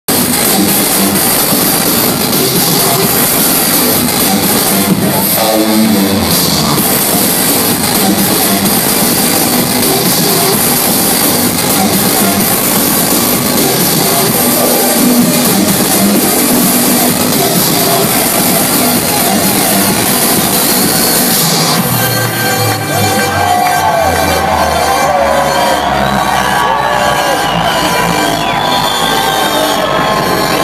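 Loud electronic dance music from a live DJ set, played over a club sound system and recorded from within the crowd. About two thirds of the way in, the dense full mix thins into a sparser passage with sliding tones.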